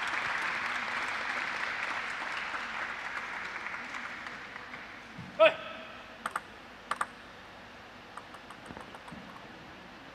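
Crowd applause fading out over the first few seconds after a point. Then a celluloid-style table tennis ball bouncing: one ringing knock about five seconds in, two quick double knocks, and a short run of light ticks near the end.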